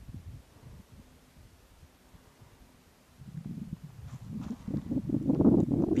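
Wind buffeting the handheld camera's microphone: a low rumble that fades almost away in the first half and builds again from about three seconds in.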